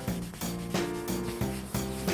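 Background music with a steady beat, over the rubbing of a hand-held cloth pad working polishing compound into a car's freshly repaired clear coat.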